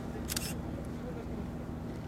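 Faint background voices over a steady low hum, with one short, sharp, hissing click about a quarter second in.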